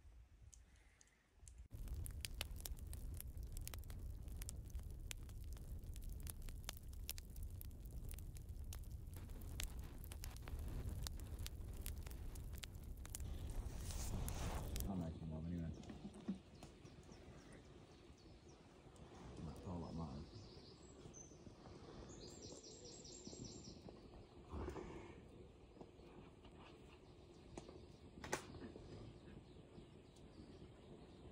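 Dense crackling clicks over a low rumble for about thirteen seconds, cutting off suddenly halfway through. Quieter woodland ambience follows, with a short bird trill about two-thirds of the way in.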